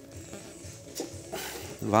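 Hand-held sheet-metal joggler (flanging tool) squeezed shut on a steel sheet to press in a step offset, giving a single short click about a second in.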